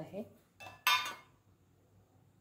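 Stainless-steel kitchenware clinking: a light clink about half a second in, then a sharper, louder metallic clink that rings briefly about a second in.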